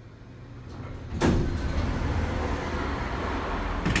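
Automatic sliding car doors of a Kone-modernized hydraulic Hopmann elevator opening: a sudden clunk about a second in, a steady sliding noise, then a sharp knock near the end as they reach the open position.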